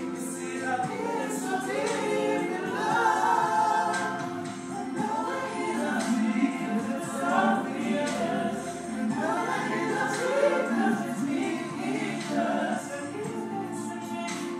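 Several voices singing together like a choir, with little or no instrumental accompaniment.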